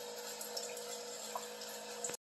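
Single-serve coffee maker brewing: a steady stream of coffee pouring and splashing into a ceramic mug, with a steady hum from the machine underneath.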